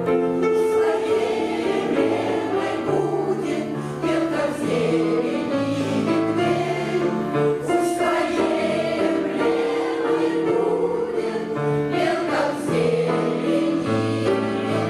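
Women's veterans' choir singing a lyrical song together, several voices sounding at once.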